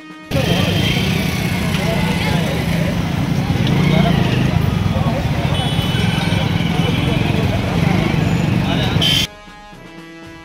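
Busy market-street noise: many people talking at once over a steady rumble of traffic and motorcycles. It starts abruptly and cuts off sharply near the end, with background music on either side.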